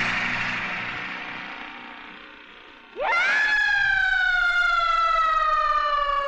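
A noisy wash that fades away over the first three seconds, then a woman's long, high scream that swoops up about three seconds in and is held, sliding slowly down in pitch.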